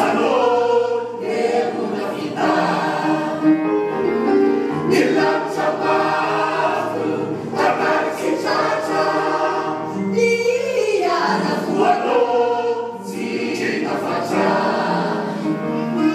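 A mixed cast of stage performers singing together as a chorus, several voices at once in a theatrical song number.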